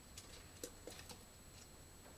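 Near silence with about five faint, irregular clicks and taps from a squirrel climbing on and nosing into a plastic bucket mousetrap.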